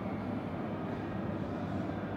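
Steady low rumble of indoor room noise, with no distinct events.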